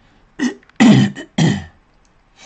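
A man coughing three times in quick succession, the middle cough loudest.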